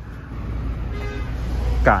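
Low, steady rumble of a vehicle engine running nearby, building up about halfway through. A short faint tone sounds around the one-second mark.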